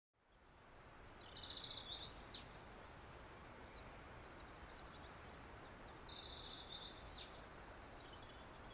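A songbird singing the same short, high song twice, about four and a half seconds apart: a quick run of notes, then a fast trill, then a few falling notes. It is faint, over a steady low hiss.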